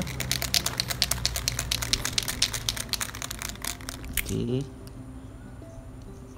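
Aerosol spray paint can being shaken to mix the paint before spraying, its mixing ball rattling in a fast, even rhythm. The rattling stops about four seconds in.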